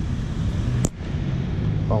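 A single sharp click a little under a second in, over a steady low background hum.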